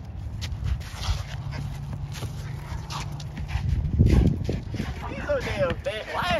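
Pickup basketball on an outdoor court: wind rumble on a phone microphone, scattered knocks of play, and a loud dull thump about four seconds in. Near the end a man breaks into high-pitched laughter.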